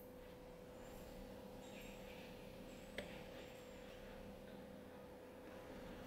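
Near silence: faint steady room hum, with one soft click about halfway through.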